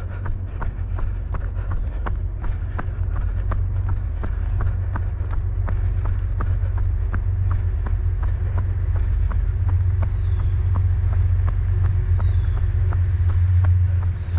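A runner's footfalls on an asphalt road, even and quick at about three steps a second, over a steady low rumble that grows a little louder toward the end.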